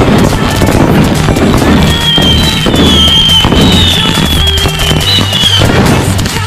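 Firecrackers bursting in a rapid, dense string of bangs and crackles, over background music with a steady bass line and melody.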